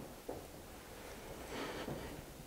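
Quiet room tone in a pause in a man's talk: a faint steady hiss and hum, with a small faint tick about a quarter second in.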